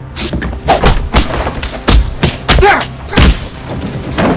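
A rapid flurry of added punch and body-blow impact sound effects, about a dozen hits in quick succession with the heaviest near the middle and toward the end, over background music. A short grunt comes about two-thirds of the way in.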